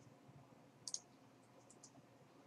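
Computer mouse button clicking twice in quick succession about a second in, followed by two fainter clicks; otherwise near silence.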